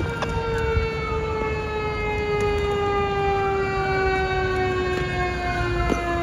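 Fire apparatus siren holding one steady tone that slowly drops in pitch across the few seconds, with a second siren tone slowly rising and falling above it. A low engine rumble runs underneath.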